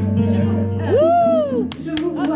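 A live band holds low sustained notes. About a second in, a voice calls out with a long rising-then-falling cry, and a couple of sharp clicks follow near the end.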